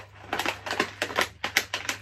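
A clear plastic packet of small hair beads being handled and opened: a run of irregular crinkling clicks, several a second.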